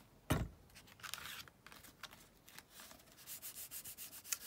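A single thump about a third of a second in, then fingers rubbing a glued paper scrap flat onto a paper journal page, ending in a run of quick short rubbing strokes.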